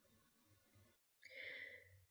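Near silence, with a faint, short intake of breath from the narrator near the end.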